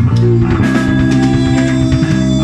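Live rock band playing: electric guitar and bass guitar holding sustained notes over drums, with no voice in this passage.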